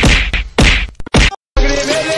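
Three loud slap sounds about half a second apart, timed to a cat's paw swats, then a brief silence and a cut to music.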